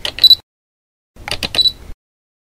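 Camera sound effects: a quick run of shutter-like clicks ending in a short high beep, heard twice, with the beeps just over a second apart.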